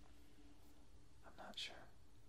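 Near silence: faint room tone with a steady low hum, and a brief soft breathy sound from the speaker's mouth about a second and a half in.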